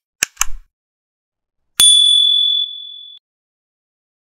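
Sound effects over dead silence: two quick sharp clicks, then a single bright bell ding that rings for about a second and a half and is cut off, like the click-and-bell of a subscribe-button animation.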